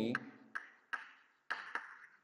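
Chalk tapping and scraping on a chalkboard as words are written, about five short, sharp knocks spread over two seconds.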